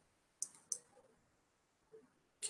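Two short computer-mouse clicks, about a third of a second apart, as the chart on screen is moved and zoomed. Otherwise near silence.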